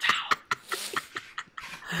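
A short wordless cry from a person near the start, then scattered crinkles of paper being handled.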